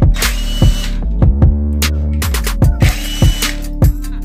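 A cordless impact wrench runs in two short bursts, loosening bolts on an engine block: one just after the start and one about three seconds in. Both are laid over loud background music with a steady electronic beat.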